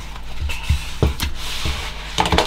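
Sticker sheets being handled on a desk: a brief paper rustle and about five light knocks as sheets are pulled out and set down beside the planner.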